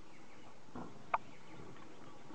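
A single brief, high bird call about a second in, over a steady outdoor hiss.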